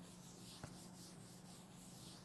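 Faint rubbing of a board duster wiping a chalkboard, over a low steady hum, with one small tap just over half a second in.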